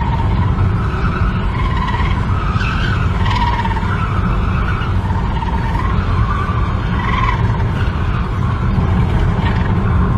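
Steady low road rumble heard inside a moving car, with a wavering squeal that keeps rising and falling in pitch: the tyre and buckled wheel of the car ahead scraping as it runs.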